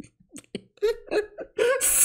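A man laughing in several short, breathy bursts, the loudest near the end.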